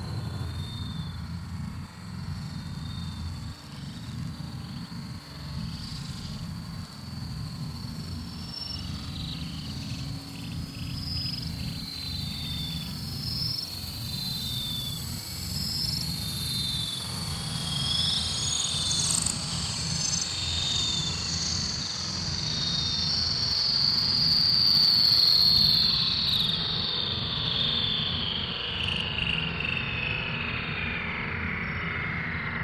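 Electronic synthesizer jam: a steady low drone under scattered short, high chirping blips. Over the second half a high tone glides slowly downward, growing louder before easing off near the end.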